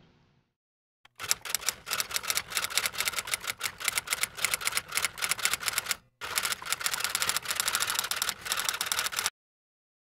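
Typewriter keystroke sound effect: rapid clatter of keys in two runs, broken briefly about six seconds in, stopping about a second before the end.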